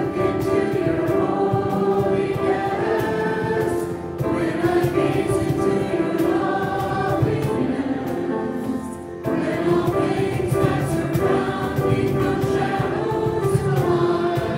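A church worship team of several singers singing a slow worship song together with accompaniment, pausing briefly between phrases about four and nine seconds in.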